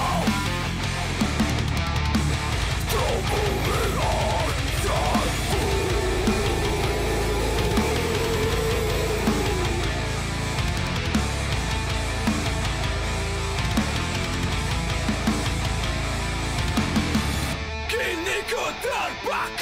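Live heavy metal band playing loud, with distorted electric guitars and a drum kit. The music breaks off suddenly just before the end.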